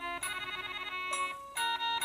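Musical snowman glass Christmas bauble playing its electronic melody: a string of clean ringing notes, with a quick fluttering run of notes in the first second and a short break just before the melody carries on.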